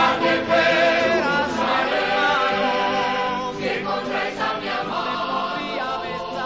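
A choir singing a Spanish liturgical chant, several voices holding wavering sung notes.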